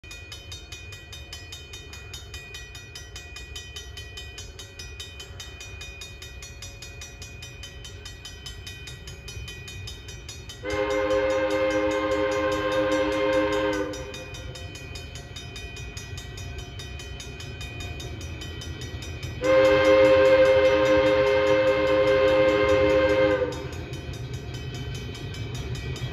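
Air horn of a 1940-built diesel locomotive, a chord of several notes, sounding two long blasts for a grade crossing: one about 3 seconds long near the middle and a longer one of about 4 seconds later on. Under the horn runs a steady low rumble.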